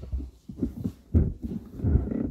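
Deep-voiced chanting by Tibetan Buddhist monks, coming in uneven low pulses.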